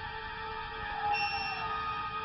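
Eerie ambient background music of sustained, held tones, with a high tone entering and a note sliding slowly downward about a second in.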